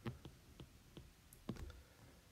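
Faint irregular clicks of a stylus tapping on a tablet while handwriting, about six in two seconds, the loudest near the start and about a second and a half in.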